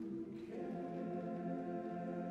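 Men's barbershop chorus singing a cappella in close four-part harmony: a soft held chord that moves to a new sustained chord about half a second in.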